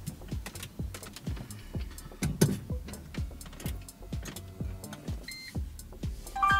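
A string of irregular light clicks and knocks, with a short electronic beep about five seconds in.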